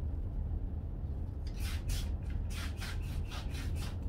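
Handheld plastic spray bottle misting a plant's leaves: a run of short hissing sprays in quick succession, starting about a second and a half in.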